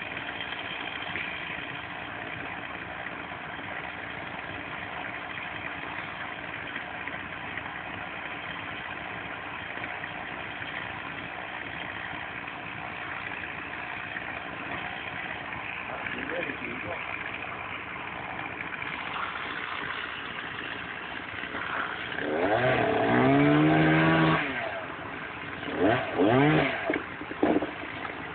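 An engine idles steadily. About 22 seconds in, a much louder pitched sound rises and holds for about two seconds, and two shorter loud bursts follow near the end.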